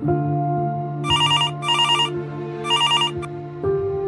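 A landline telephone ringing with an electronic trill, three short rings about a second apart, over soft background music with long held notes.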